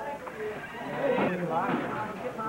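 Indistinct voices of several people talking and calling out over one another, with a couple of rising-and-falling voice glides between one and two seconds in.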